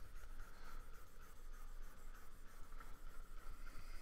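Faint scratching of a pen stylus moving over the screen of a Wacom Cintiq pen display, over a low steady hum.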